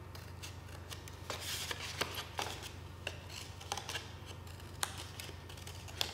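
Small scissors snipping into folded black card: a string of short, faint snips at irregular intervals as small feather-shaped notches are cut along the fold of a paper bird's wing.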